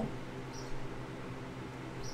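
A pause in speech with only faint room tone: a steady low hiss and hum from the room and microphone, and a brief faint hiss about half a second in.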